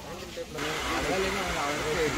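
Voices of several people talking in the background, overlapping and not clear enough to make out. A steady hiss comes in suddenly about half a second in and stays under the voices.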